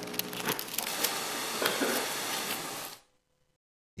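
Courtroom room noise: rustling and small clicks of papers and movement, with faint distant voices. The sound cuts off suddenly to dead silence about three seconds in.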